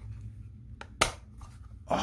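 A hard plastic phone holster being handled: one sharp click about a second in, then a short scraping rustle near the end.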